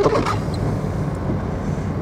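Car engine running at low speed, heard from inside the cabin as a steady low hum while the car moves slowly.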